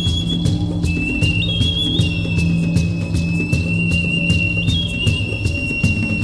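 Background music: a high, thin whistle-like melody holding long notes over a bass line and a steady ticking beat.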